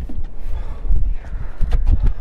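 Wind rumbling and buffeting on the microphone, with a few light knocks from the plastic water jug being handled over the engine bay.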